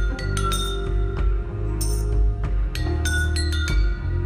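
Slow instrumental passage from an industrial band playing live: struck metal percussion rings out in clear, high, chime-like tones, several irregular strikes a second, over a steady deep bass drone.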